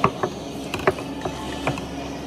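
Stainless steel mixing bowl knocking and clinking against the rim of a plastic tub as crab mix is tipped out of it: about half a dozen short, sharp knocks.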